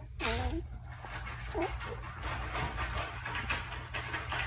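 Adult German shepherd bitch whining: a falling whine right at the start and a short second whine about a second and a half in, over steady background noise.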